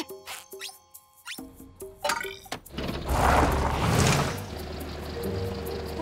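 Light cartoon music with short notes and a few clicks, then, about three seconds in, a cartoon van engine and rushing sound as the vehicle pulls away, which settles into a steady low drone under the music.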